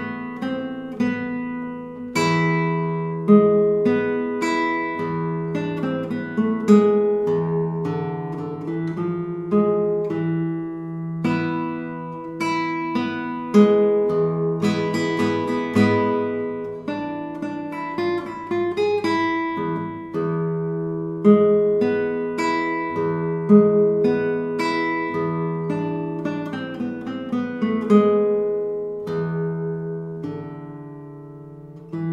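Solo nylon-string classical guitar played fingerstyle: a plucked melody over a recurring low bass note, with sharp accented notes and chords every second or two.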